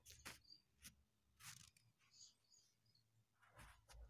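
Near silence with a few faint, scattered clicks.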